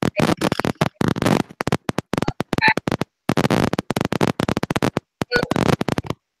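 Choppy bursts of harsh digital noise from a video-call audio feed breaking up, stuttering on and off several times a second with short gaps.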